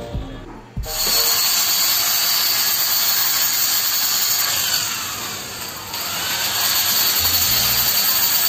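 A small handheld electric power tool running with a steady high-pitched whine, starting suddenly about a second in. It sags briefly around the middle and then picks up again.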